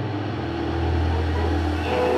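Steady low rumbling drone, swelling slightly towards the middle.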